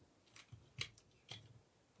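Four or five faint clicks over near silence: the silver and moonstone beads of a stretch bracelet clicking together as it is handled.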